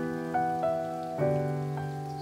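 Solo piano playing a gentle melody over chords in waltz time, with new notes struck every half second or so and left to ring. A steady rain-like hiss runs underneath, typical of the rain ambience laid under lo-fi piano.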